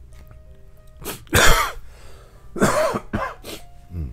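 A man coughing and clearing his throat in a run of about five short bursts, the loudest about a second and a half in.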